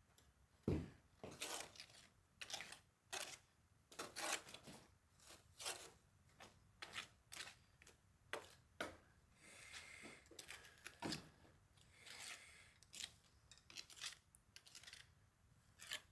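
Steel pointing trowel scraping mortar off a hawk and pressing it into the joints of a stone pillar: faint, irregular scrapes and small taps, roughly one or two a second.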